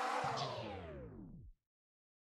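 Background music ending in a pitched sweep that slides down in pitch and cuts off suddenly about one and a half seconds in.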